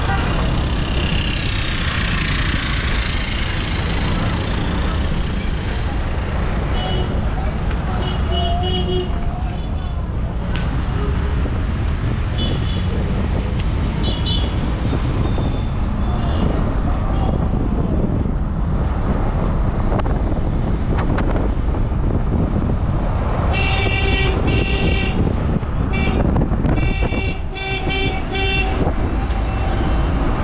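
Road traffic heard from a moving vehicle: a steady low rumble of engine and road noise, with vehicle horns tooting in short blasts a few times in the first half and a rapid run of repeated honks near the end.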